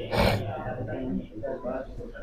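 A man's sharp breath, then low, indistinct speech.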